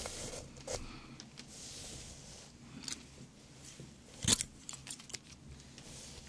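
Close-up handling of hairdressing tools: soft rustling and metallic clinking, with one sharp loud click about four seconds in followed by several lighter clicks.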